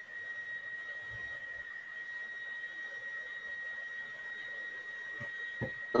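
A steady, high-pitched electronic whine with a fainter higher overtone, over a low even hiss, cutting in abruptly at the start: line noise picked up by an open microphone on a video call.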